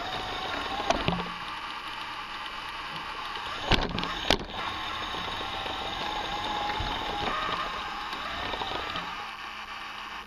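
Small electric motor and gear train of a motorised Lego vehicle, whirring steadily with a wavering whine as it drives. Two sharp knocks come a little over half a second apart, about four seconds in.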